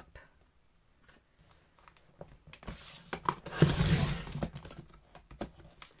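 A sliding paper trimmer's blade cutting through two stacked sheets of paper. The cut is a noisy stretch of about two seconds in the middle, with a few small clicks of the slider around it.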